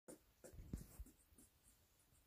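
Faint scratchy rustling with a few soft low bumps in the first second, then near silence.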